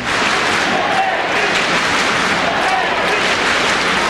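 Large arena crowd noise: steady applause mixed with many voices at once.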